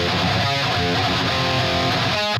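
Distorted metal rhythm guitars played back from a mix session, the original tracks and their opposite-panned duplicates soloed together. The duplicates are not yet shifted in time, so the pair sounds pretty mono.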